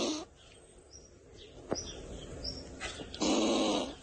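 A squirrel sound from an on-screen meme clip: faint scattered noises, then one loud, harsh call lasting under a second near the end.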